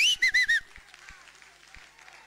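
A loud whistle, blown or whistled: one rising note, then three quick short notes, all within the first half second or so.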